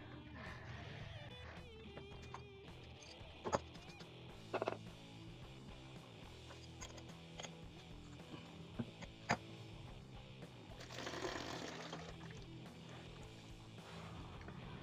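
Quiet background music, with a few sharp clicks of steel pipe wrenches on a faucet's brass fitting as it is unscrewed, and a brief hiss of noise a little before the end.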